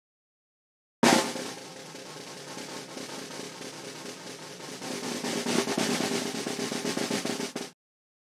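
An edited-in snare drum roll sound effect that starts suddenly about a second in, swells louder and cuts off abruptly near the end, building suspense before a reveal.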